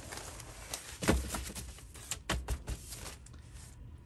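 Sheets of paper being handled and lifted from a stack: rustling with a few sharp knocks, the loudest about a second in and several more a little after two seconds.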